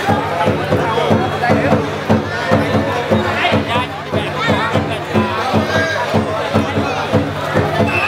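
A large festival drum beaten in a steady quick rhythm, about three strokes a second, under the voices of the crowd.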